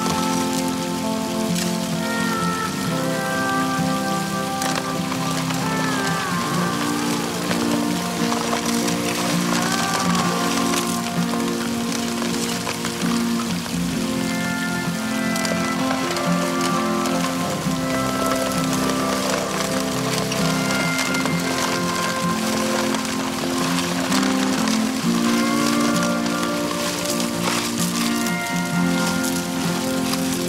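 Background music of slow, sustained notes over a steady hiss of water spraying and running through a gold-prospecting highbanker sluice.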